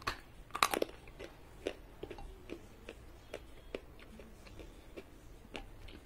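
A bite into a piece of red edible clay, with loud crunches in the first second, then steady chewing with small crunches about two or three times a second.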